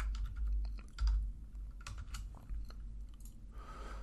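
Computer keyboard typing: irregular, quick keystroke clicks with short pauses between runs, over a low steady hum.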